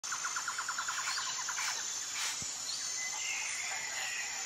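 Bird calls: a fast trill of repeated chirps, about nine a second, for the first two seconds or so, then a few scattered fainter calls. Throughout there is a steady high-pitched whine.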